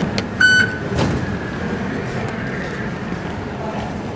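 MRT fare gate card reader giving one short, high beep as a card is tapped, followed about half a second later by a sharp knock from the gate. A steady concourse hum runs underneath.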